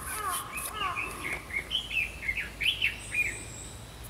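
Small wild songbirds singing: a falling call note repeated about three times a second for the first second or so, then a fast, varied warbling song, higher in pitch, that stops a little before the end.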